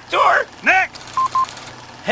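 A cartoon character's voice gives two short vocal sounds, a rough burst then a brief rising-and-falling sound, followed a little over a second in by two short, identical electronic beeps.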